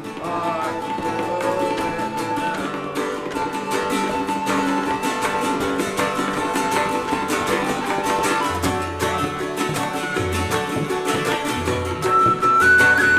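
Live instrumental folk trio: a whistle plays a sustained melody over a strummed and plucked cittern and a tabla. Deeper drum strokes join about eight and a half seconds in.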